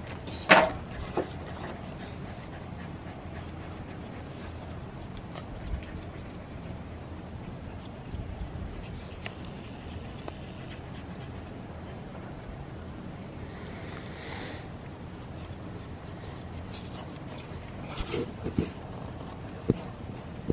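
A dog panting quietly while grooming scissors make a few faint clicking snips, over a steady low background noise. A short loud burst, like the tail of a laugh, comes just after the start.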